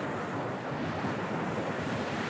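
Steady rush of ocean surf mixed with wind buffeting the microphone.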